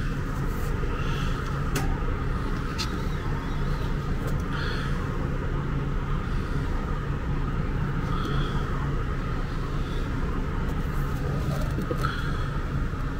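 Steady low background hum, unchanging throughout, with a few faint clicks.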